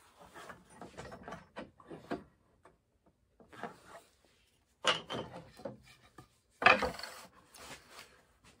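Table saw being adjusted by hand with the motor off, its blade lowered and its fence shifted: scattered light knocks and rubbing of metal and wood, with two louder knocks about five and seven seconds in.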